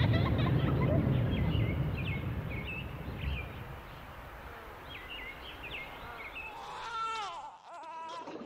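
Small birds chirping in short calls over a low rumble that fades after the first couple of seconds. Near the end a child's crying voice slides down in pitch.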